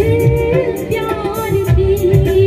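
A woman singing a melodic line through a microphone, her voice gliding and bending in pitch, over live band accompaniment with a steady drum beat.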